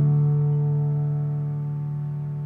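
Solo piano music: a soft chord held and slowly dying away, with no new notes, as a gentle lullaby piece draws to its close.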